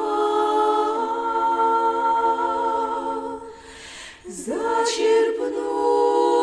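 Female vocal quartet singing a cappella in close harmony, holding long chords. A little over halfway the voices break off briefly for an intake of breath, then come back in with an upward slide.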